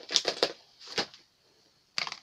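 Handling noises as accessories are lifted out of an open tablet box: a quick cluster of clicks and rustles at the start, another about a second in, and a sharp click at the very end.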